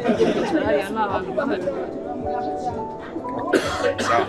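Talking over background music that holds sustained notes, with a short, sharp noisy burst near the end.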